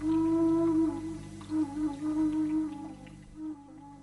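Background music: a slow solo melody, one line that opens on a long held note and then moves in short phrases, over a steady low hum.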